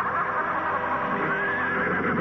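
Title music with a horse whinnying over it in the second half, a wavering high call.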